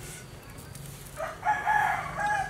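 A rooster crowing: one long call that starts a little past the middle and is the loudest sound here.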